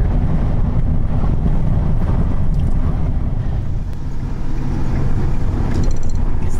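A moving van's engine and tyre noise heard inside the cab: a steady low rumble.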